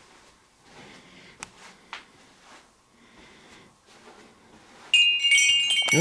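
Quiet handling rustle with a couple of small clicks, then about five seconds in a sudden loud burst of metallic chiming: several high ringing tones sounding together and lingering.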